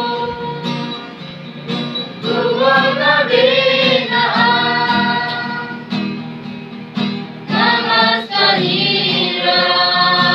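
A group of teenage students singing a song in Garo together, accompanied by a strummed acoustic guitar, in sung phrases of held notes.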